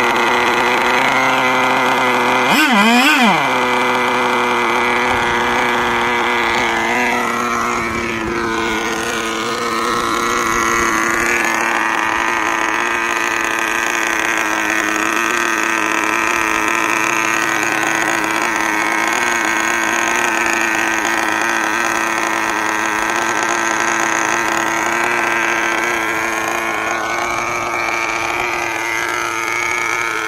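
Two-stroke glow-fuel engine of a radio-controlled model boat with a K&B outboard leg, running at a high, steady pitch. It revs up and back down once about three seconds in, and its pitch wavers up and down between about eight and twelve seconds in.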